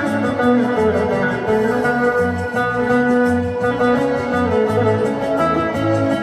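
Bağlama (long-necked Turkish saz) played with a plectrum, a picked melody of Turkish folk-style music. Under it run low bass notes that change every half second or so and a steady beat.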